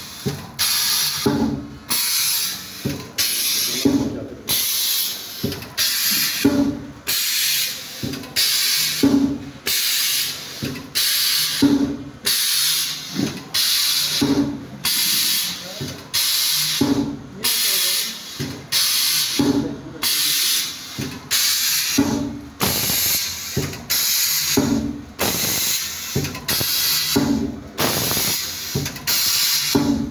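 Fully automatic hot foil stamping machine printing on ribbon and cycling by itself: a quick run of repeated hisses, with a low thump of the press stroke about every two and a half seconds.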